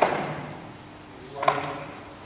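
Two sharp slaps of karate blocks and strikes landing on a partner, about a second and a half apart, the first the louder, each followed by a short echo from the hall.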